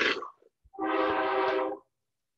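A passing truck sounds its horn once, a steady pitched blare of about a second. Just before it comes a short, sudden burst of noise.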